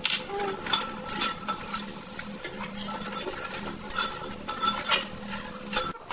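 Metal spatula scraping and knocking against a metal kadai in repeated strokes while chopped onions, capsicum and garlic are stirred as they fry, over a faint sizzle.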